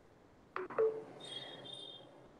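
A short click about half a second in, then a faint steady high-pitched electronic beep tone for most of the last second.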